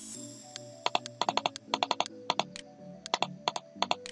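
Bursts of rapid computer-mouse clicks, several in quick succession and repeated in clusters, over faint sustained tones.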